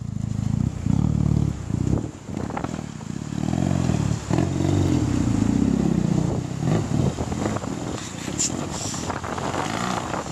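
An enduro motorcycle's engine revving up and down under load as the bike rides through a shallow river and up a gravel bank, its pitch rising and falling with several brief dips.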